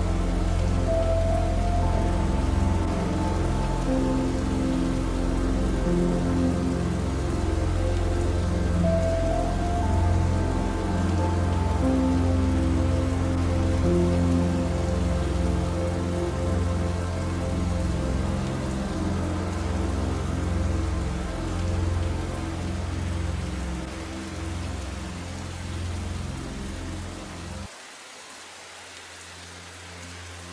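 Steady soft rain mixed with slow, gentle background music of long held notes over a deep low drone. About two seconds before the end, the music and the drone cut out suddenly and only quieter rain is left.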